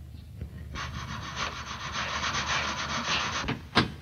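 A dry, rasping scrape that runs steadily for about three seconds with a fine, rapid grain, stopping shortly before a single sharp click near the end.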